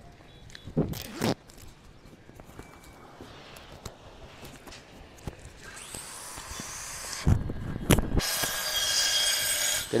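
A few sharp knocks, then a loud, steady rasping noise that starts about eight seconds in and carries on to the end.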